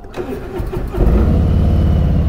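Harley-Davidson Electra Glide's Milwaukee-Eight 107 V-twin being started: the starter cranks briefly, the engine catches about a second in and settles into a steady idle.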